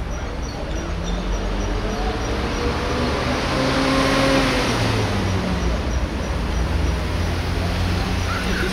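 Road traffic with a motor vehicle passing. Its engine and tyre noise grows to its loudest about halfway through, then eases off.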